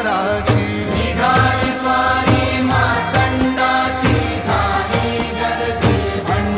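Marathi devotional bhajan music to Khandoba: a sustained melody line over a steady percussion beat.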